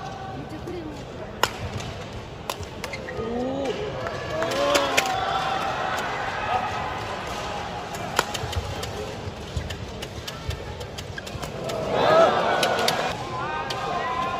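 Badminton rally in an indoor arena: sharp cracks of rackets striking the shuttlecock every second or two, with shouting voices in the hall that swell near the end.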